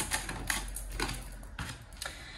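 Oracle cards being handled and laid down on a table board: a few light clicks and taps of card against card and board.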